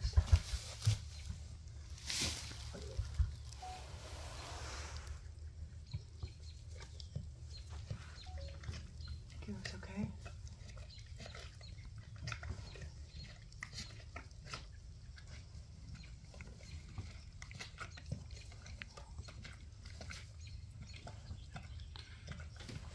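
Faint sounds of a mare and her newborn foal lying in straw: rustling and soft animal noises, with a few knocks in the first few seconds, over a low steady hum.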